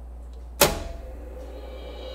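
A cassette deck's key pressed down with a single sharp mechanical clunk about half a second in, then the deck's low steady hum and faint tape hiss as the cassette starts to play.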